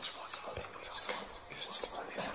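Whispering voice: short breathy hisses at irregular intervals, with little voiced sound.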